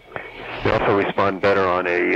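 A man speaking over a telephone line, recorded on cassette. The speech starts a fraction of a second in.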